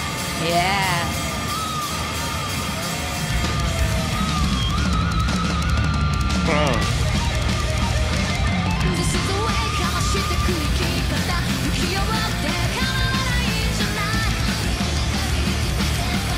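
Live heavy metal music: fast, driving drums and distorted guitars, with a lead guitar line that bends and wavers in pitch and sweeps quickly about six and a half seconds in.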